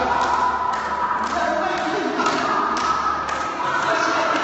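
A group of people's voices holding long notes at several different pitches at once, each note sustained for a second or more before stepping to another. Irregular thuds and taps sound throughout.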